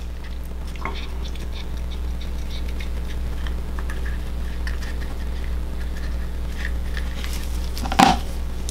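Faint small snips and crinkling as a small blade cuts into the leathery shell of a ball python egg, over a steady low hum; a sharper click near the end.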